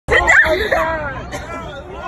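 Several people's voices talking at once, overlapping and excited, loudest right at the start.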